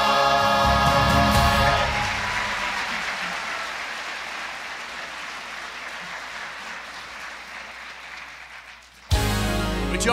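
A church choir with accompaniment holds a final chord that cuts off about two seconds in. Audience applause follows and slowly dies away. About nine seconds in, music starts suddenly.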